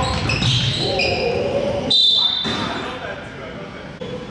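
A basketball being dribbled on a hardwood gym floor, with sneakers squeaking in short high chirps, the longest about two seconds in, and players' voices calling out.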